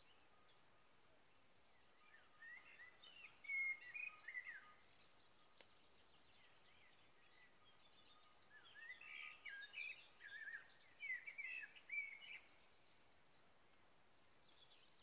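A songbird singing two bouts of quick, varied warbling phrases, one about two seconds in and a longer one from about eight and a half to twelve and a half seconds, over the faint, steady, evenly pulsing high chirp of an insect.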